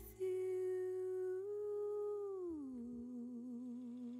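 A female singer's voice humming one long held note with no words, stepping up slightly about one and a half seconds in, then sliding down to a lower note and holding it with vibrato. The accompaniment drops away as the hum begins.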